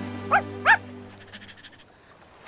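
Cartoon puppy giving two short, rising yips in quick succession, over faint background music that fades away.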